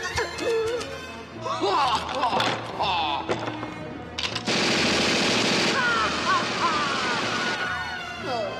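A cartoon Tommy gun fires one sustained burst of about three seconds, starting about halfway in. Orchestral score music with gliding phrases plays throughout.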